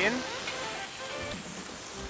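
Sea mullet fillet frying in hot oil in a pan, a steady sizzle, just turned after searing skin-side down to golden. Faint background music underneath.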